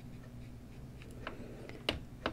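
Faint dabs of a watercolour brush on cold-press paper: a few soft ticks, the clearest near the end, over quiet room tone.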